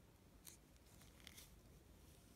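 Near silence with a few faint, brief rustles and light clicks, about half a second in and again about a second later, from handling the finished crochet work and its yarn ends.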